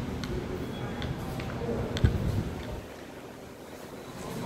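Indistinct voices in a room, with a single sharp thump about two seconds in.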